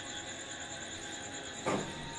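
Quiet, steady room noise with a faint high-pitched whine, and one short, soft noise of body or clothing movement late on.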